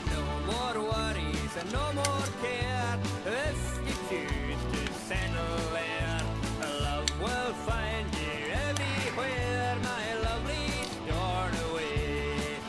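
Background music: an upbeat song with a sung vocal over a steady, pulsing bass beat.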